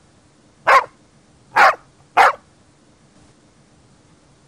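A dog barking three times in quick succession, three short barks less than a second apart.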